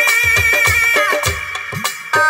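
Instrumental passage of a Bengali baul folk song: an electronic keyboard plays a high, reedy, held lead melody over steady hand-drum beats whose low strokes slide in pitch. The melody stops a little past the middle, leaving the drums, and the level dips near the end.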